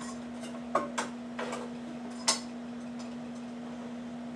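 A few sharp clinks and knocks of cookware and utensils being handled and moved about on the stovetop and counter, the loudest a little after two seconds in, over a steady low hum.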